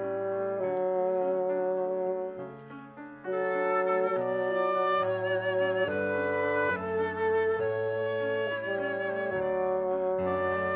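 Classical chamber music played live: a bassoon holds sustained notes within an ensemble that includes piano. The music thins out and quietens about two and a half seconds in, then returns fuller about a second later.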